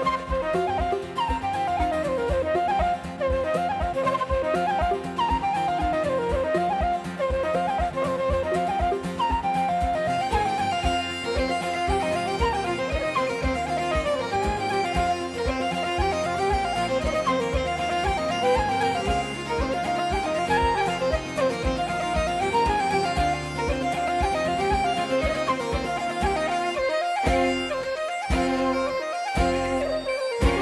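Scottish folk band playing a fast traditional tune live, with flute, bagpipes and fiddle carrying the melody over the pipes' steady drone and a regular bass rhythm.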